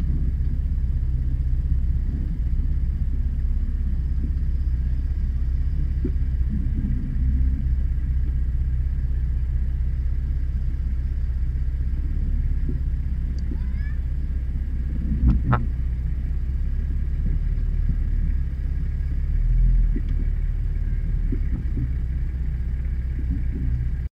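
Off-road 4x4's engine running at low revs while crawling over rough ground, a steady low rumble heard from inside the cab. A sharp knock comes about fifteen seconds in, and the rumble swells briefly near twenty seconds.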